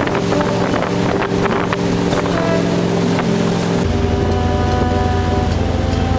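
Wakeboard tow boat's engine running under way, with wind buffeting the camera microphone and the wake water rushing. The sound is loud and steady.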